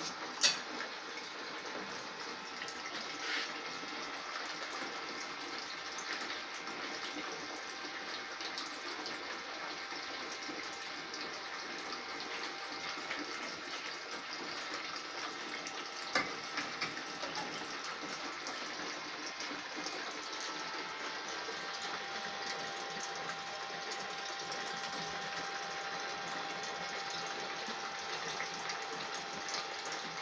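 Steady rush of running water from a small pump recirculating iced water through the two plates of a beeswax foundation press. A sharp click about half a second in and a knock midway.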